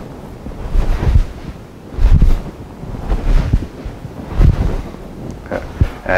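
Repeated low whooshes of air and clothing rubbing on the body-worn microphone as an arm swings through a wave motion, roughly one a second.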